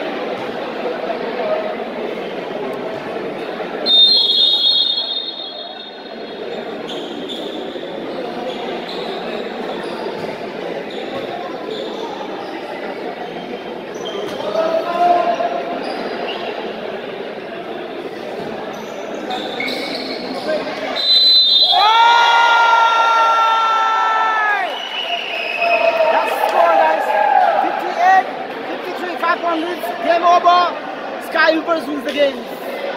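Basketball game in an indoor hall: crowd chatter and a ball bouncing on the court, with a shrill referee's whistle about four seconds in and again around two-thirds of the way through. Right after the second whistle comes a long held tone of about three seconds.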